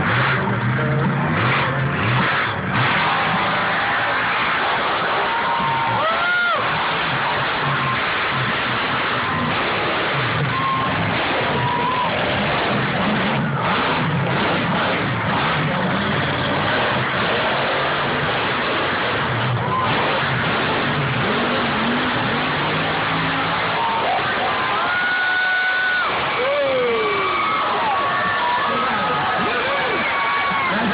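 Off-road mud truck engine running and revving on a dirt course, with steady crowd noise underneath. Near the end come shouts and cheers from the crowd.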